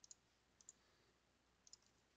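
Three faint computer mouse clicks, spaced out against near silence.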